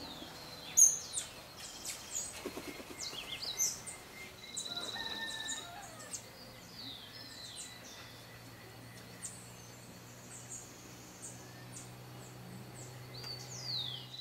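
Several birds calling: sharp high chirps and short down-slurred notes scattered throughout, with a loud chirp about a second in and a buzzy trill around five seconds in.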